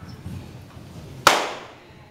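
A single sharp, loud crack, like a slap, a little over a second in, echoing briefly in a large room.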